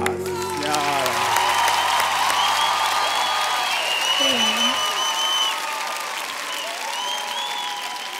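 Studio audience applauding and cheering, with shouts rising over the clapping. The last notes of the music fade out in the first second or so.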